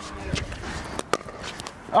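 Pickleball paddles striking the hard plastic ball in a rally: a few sharp pocks, two of them close together about a second in, with voices in the background.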